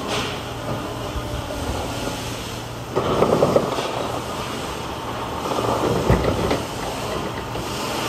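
A wing-body truck's side wing panel being raised hydraulically: a steady low mechanical hum with loud rattling and clanking from the moving panel, strongest about three seconds in and again around six seconds, with a sharp thump near six seconds.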